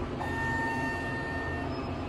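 Elevator's electronic signal tone sounding once, held for about a second and a half after a soft click, over the steady low hum of the cab.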